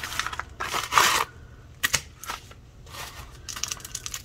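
Packaging being handled: a paper mailer bag and a plastic sleeve rustling and crinkling. The loudest rustle comes about a second in, followed by a couple of light clicks and more crinkling near the end.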